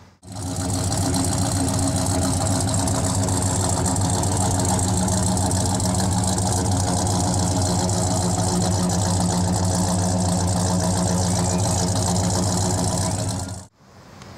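428 cubic-inch Pontiac V8 with a four-barrel carburettor in a 1967 Pontiac GTO, idling steadily through dual exhaust with chrome tips, a deep even note with no revving. The sound fades in at the start and drops out just before the end.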